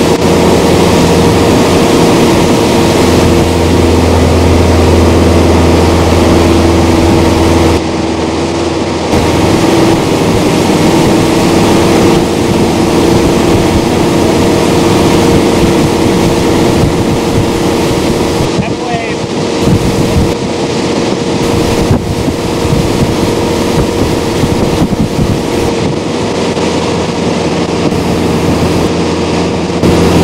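Motorboat engine running steadily at towing speed, with the rush of the wake and wind buffeting the microphone. The strong low hum of the engine eases about eight seconds in.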